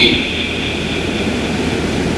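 Steady, even background noise with no words: room noise picked up through the lectern microphone during a pause in speech.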